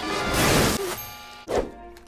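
Background music with a cartoon sound effect: a burst of noise through most of the first second, fading away, then a short thud about one and a half seconds in.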